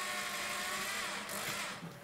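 Corded electric drill motor running at a steady speed as it drives a short screw through a steel profile into plywood. The sound fades away near the end.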